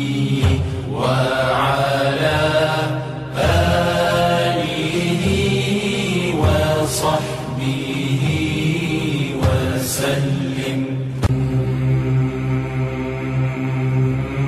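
A voice chanting an Arabic salawat, a devotional blessing on the Prophet Muhammad, in long wavering held notes over a steady musical backing.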